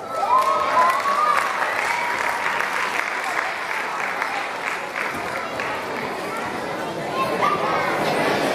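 Audience applauding in a hall, a steady patter of clapping with children's voices and chatter over it.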